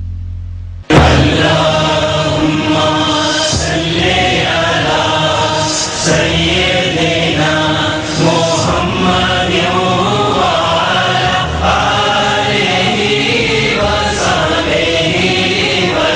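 Male voices chanting as a choir over music in a TV channel ident. It cuts in suddenly and loud about a second in, after a low droning tone fades out.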